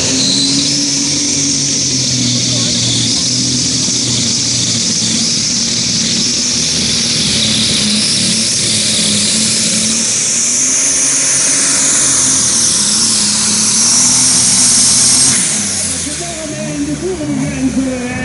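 Superstock pulling tractor's engine running flat out down the track under load, with a loud high whistle over the engine note that rises late in the run. It drops off sharply about fifteen seconds in as the pull ends, and an announcer's voice comes in near the end.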